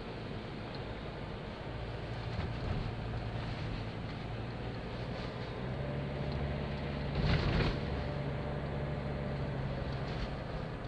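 Four-wheel drive's engine and road noise heard from inside the cab while driving, a steady low hum that grows a little stronger about six seconds in. A brief louder rush of noise comes just after seven seconds.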